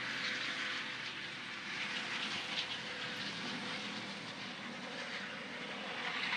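An aircraft passing overhead, heard as a steady rushing engine noise.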